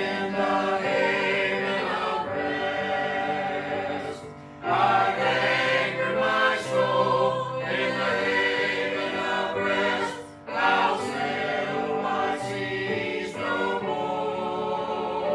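Mixed church choir of men and women singing a hymn together, in sustained phrases with two short breaks between them, about four and a half and ten seconds in.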